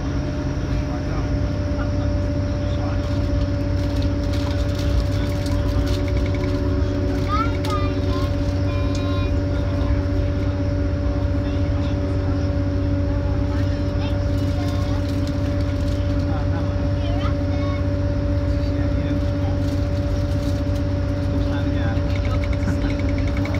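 Inside a Grand Central diesel passenger train running at speed: a steady low rumble of wheels on rail and running gear, with a constant hum from the traction equipment. Faint voices come through in places.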